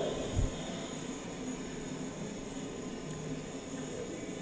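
Steady rushing, air-like noise with a faint low hum, from a diffuser-test video playing over the room's speakers, with one low thump about half a second in.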